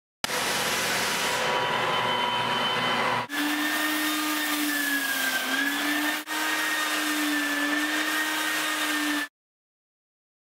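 Floor sanding machines running on a hardwood floor: a steady motor hum for about three seconds, then an edge sander grinding off the old finish along the floor edges, its motor whine wavering slightly. The sound breaks off briefly twice and stops abruptly near the end.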